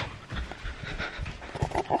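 Handling noise from a phone being carried while walking: rustling and soft low knocks, with close breathing on the microphone.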